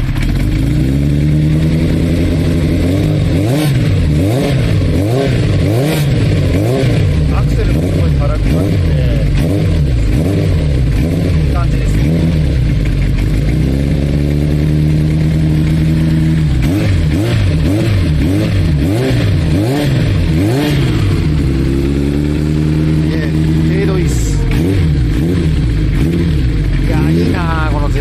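Kawasaki Zephyr 750's air-cooled inline-four running through an aftermarket Kamikaze exhaust and being revved over and over. There are many quick throttle blips, and about three times the revs are held higher for a couple of seconds before falling back.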